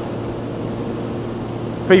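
Steady rush of wind with the Kawasaki Z750R's inline-four engine running at an even cruise underneath.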